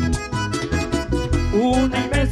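Live vallenato band playing an instrumental passage between sung lines: an accordion melody over electric bass and percussion.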